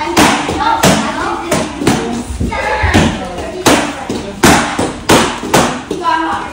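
Taekwondo kicks landing on handheld kicking paddles: a run of about ten sharp smacks, one every half to three-quarters of a second, with voices in the background.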